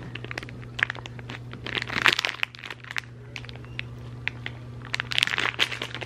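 Clear plastic poly bag crinkling as it is handled, in scattered crackles that come in small bursts, busiest around two seconds in and again about five seconds in.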